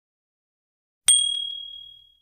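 Notification-bell 'ding' sound effect of a subscribe-button animation: one bright bell ring about a second in, fading out over about a second.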